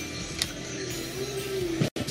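Background music with one long held note, and a single light click near the start as clear plastic clamshell food containers are handled. The sound drops out briefly just before the end.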